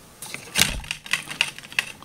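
Plastic toy windmill spinning on its rod, giving a run of irregular plastic clicks and rattles that starts a moment in and dies away near the end.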